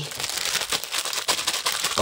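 Clear plastic cake wrapper crinkling as it is handled and pulled open, a steady run of fine crackles.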